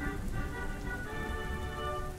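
Sustained synth chord of several held notes that enters shortly in, over steady rain and a low rumble.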